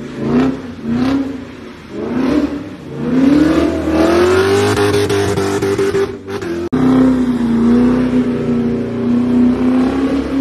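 Engine of a BMW E39 5 Series sedan revving hard with the wheels spinning on wet pavement. It gives a few short rev blips, then climbs to high revs and holds them. The sound cuts off abruptly a little past the middle and comes back at high revs.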